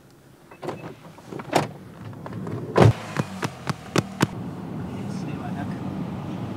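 A car door being opened and shut: a run of sharp clicks and knocks, the loudest about three seconds in, followed by the steady low hum of the car's cabin.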